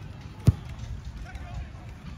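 A single sharp thump of a soccer ball being kicked, about half a second in, over faint voices of people along the sideline.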